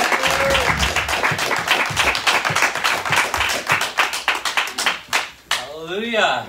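A congregation applauding, with dense clapping that dies away about five and a half seconds in.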